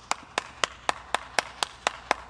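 One person clapping steadily, about four claps a second.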